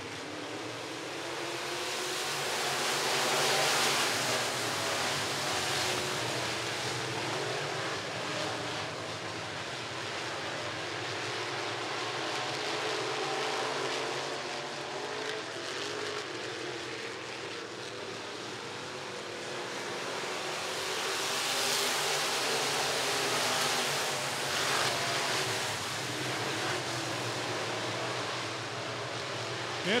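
A pack of IMCA Sport Mod dirt-track race cars with V8 engines running hard around the oval on a green-flag restart. The engines swell loudest as the field passes close about four seconds in, and again around twenty-two seconds in.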